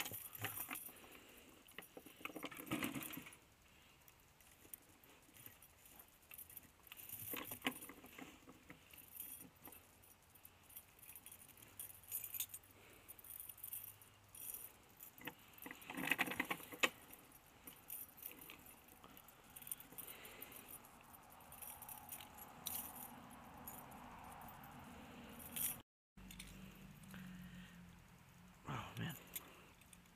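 Steel chain jangling and clinking in scattered bursts as it is handled and wrapped around a wooden post to anchor a raccoon trap.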